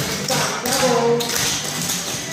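Hard-soled dance shoes tapping on a hardboard floor in quick footwork: a busy run of sharp heel and toe strikes, several a second.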